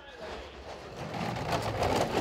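A skeleton sled's steel runners sliding fast on the ice of a bobsled track. The rumble grows louder as the slider approaches through the curve.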